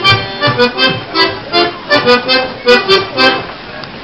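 Live accordion playing a lively Kielce-region folk dance tune, with a steady rhythm of sharp knocks two to three times a second. It gets a little quieter near the end.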